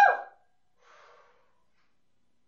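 A woman's short, excited 'woo!' whoop, pitched and loud, followed about a second in by a faint breathy exhale.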